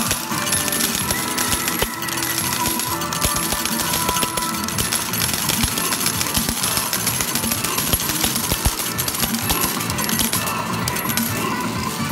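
Medal pusher arcade machine: metal medals clinking and dropping in many quick clicks over the machine's electronic music.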